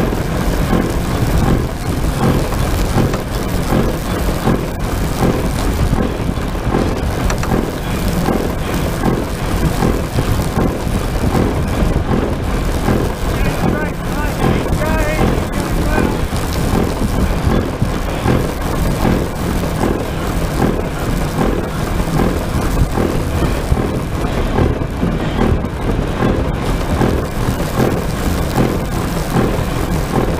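Loud, steady rushing and rumbling from the pilot's seat of the Aerocycle 3 human-powered aircraft as it moves at speed along the runway: airflow buffeting the microphone mixed with the aircraft's own running noise.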